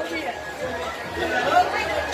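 Chatter: several people's voices talking at once, fainter than the single louder voice calling out just before and after.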